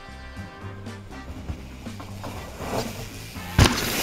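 Background music, then about three and a half seconds in a single sharp thud as a mountain bike lands off a tall wooden drop.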